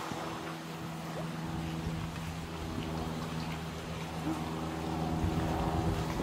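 A distant engine running steadily, an even low drone that holds without changing pitch.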